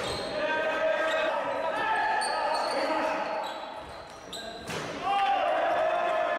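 Live sound of an indoor basketball game in a gym: players' shouts and calls echo round the hall, with the ball bouncing on the wooden court and a few sharp knocks near the end.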